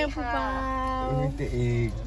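Speech: a word drawn out in one long, whiny, slowly falling tone.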